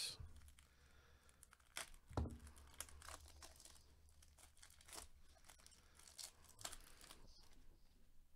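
Faint crinkling and rustling of a clear plastic card sleeve being handled with gloved hands, with a few soft clicks and taps, the clearest about two seconds in.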